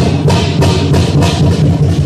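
Loud Chinese dragon-dance percussion: a big drum with clashing cymbals beating fast and steady, about four strikes a second.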